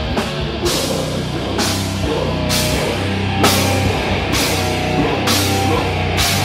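Death metal band playing live, with distorted guitars and bass holding heavy chords under the drum kit, and a cymbal crash about once a second.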